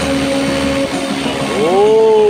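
Radio-controlled scale Airwolf helicopter running on the ground at lift-off power, a steady tone from its rotor drive. Near the end a louder tone rises and falls in pitch.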